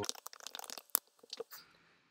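Computer keyboard typing: a quick run of key clicks, then a sharper single click about a second in and a few fainter clicks after.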